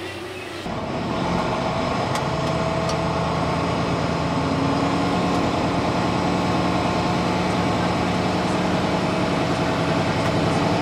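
Semi-truck diesel engine running steadily, heard from inside the cab while the truck moves at low speed. It starts suddenly just under a second in, after a brief stretch of quieter indoor room noise.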